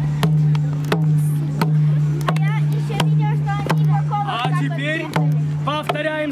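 Two-headed barrel drum beaten in a slow, steady beat of about three strokes every two seconds, each stroke leaving a low ring. High, wavering voices whoop over the beat from about two seconds in.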